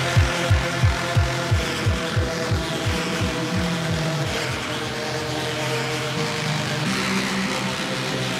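Electronic dance music breakdown from a drum and bass / hardcore mix. A run of deep kick drums, about three a second, drops in pitch on each hit and thins out over the first few seconds. Sustained synth chords and a held bass note remain, the bass note stepping up twice.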